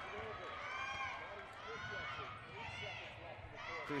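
Basketball sneakers squeaking on a hardwood court in quick, overlapping chirps as players run up the floor, over a steady arena crowd murmur.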